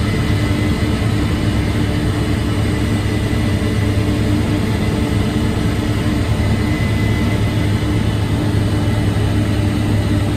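A 480 hp Case IH 8250 Axial-Flow combine running steadily under load while harvesting wheat and unloading grain on the go, heard from inside the cab. A constant low hum with a steady whine above it.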